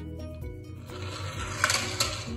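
Background music, with a small toy car rolling down a wooden block ramp: a rolling rush from about a second in and a sharp clack as it drops onto the table.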